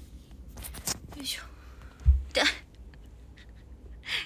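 A woman's short, breathy, whispery vocal sounds, with a low thump about two seconds in from the phone being handled.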